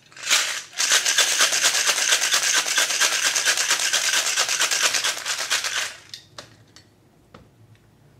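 Ice rattling inside a Boston shaker, a glass mixing glass capped with a stainless-steel tin, shaken hard in a fast, steady rhythm for about six seconds and then stopping. A few faint clicks and knocks follow as the shaker is set down.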